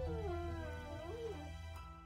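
Dog whining: one drawn-out whine that rises and falls in pitch, then a shorter whine about a second in, fading toward the end. The dog is whining for food it is being kept from. Quiet background music with steady tones plays underneath.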